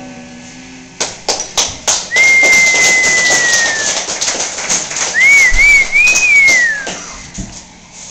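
Applause at the end of a song: a last acoustic guitar chord dies away, a few separate claps start about a second in, then steady clapping with a loud human whistle over it: one long, slightly falling note, then a wavering one that drops off before the clapping fades.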